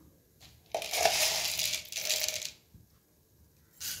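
A spoonful of black peppercorns poured into a non-stick kadai, rattling and scattering across the pan for about two seconds. A short knock comes near the end.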